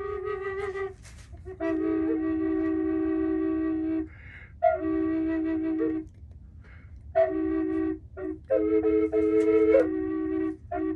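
3D-printed triple flute in E played in long held notes, two pipes sounding together at once so a melody moves against a steady lower tone. The notes come in about five phrases with short gaps between them.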